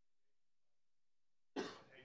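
Near silence, then about one and a half seconds in a single sharp human cough that trails off.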